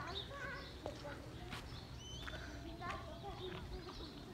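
Faint open-air ambience: distant voices and scattered short bird chirps over a low steady rumble.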